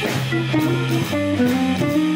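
Live jazz organ trio playing a medium-tempo tune: electric guitar, organ and drums, with a line of low bass notes moving about twice a second.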